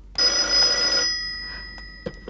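A telephone ringing once: a single ring about a second long that then fades away.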